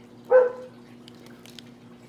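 A dog barks once, short and sharp, about a third of a second in, over a steady low hum.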